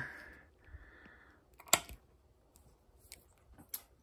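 A sharp electrical click about halfway through, and a smaller click near the end, as power is switched on through the pre-charge resistor to the electric tractor's motor controller. A faint steady high whine dies away in the first second and a half.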